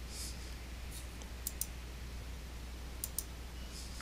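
Faint computer mouse clicks in two quick pairs, about a second and a half in and again about three seconds in, over a steady low hum.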